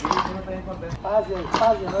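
Indistinct voices talking, with no words that can be made out.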